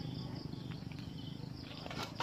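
Crickets chirping in a rapid, even pulsing trill over a low steady rumble, with a couple of faint crackles from the bonfire about a second in.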